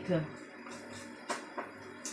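A few light clicks and taps of a utensil against a dish as raw chicken pieces are handled, the sharpest about a second and a half in.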